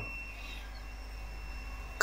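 Quiet room tone: a faint steady low hum with light hiss, and no distinct event.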